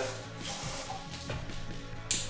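Background music with steady low tones, under a soft hiss of water running from a garden-hose spray nozzle into a terrarium's water bowl.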